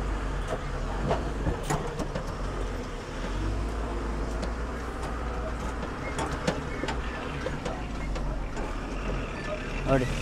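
Truck's diesel engine running with a steady low rumble as the truck moves slowly over rough, potholed ground, with scattered clicks and rattles.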